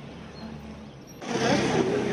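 Quiet outdoor ambience with a faint low hum, which about halfway through changes abruptly to the louder, noisy bustle of a crowded pedestrian street, with indistinct voices of passers-by.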